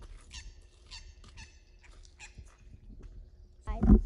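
Birds calling in a run of short, high chirps over a low wind rumble on the microphone. A loud low rumble on the microphone comes near the end.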